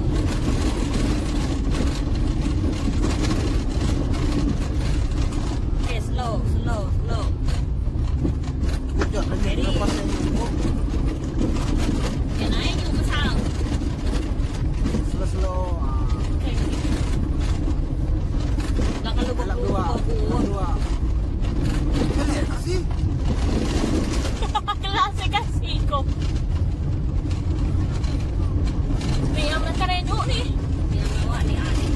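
Steady low rumble of a car driving over a gravel road, heard from inside the cabin.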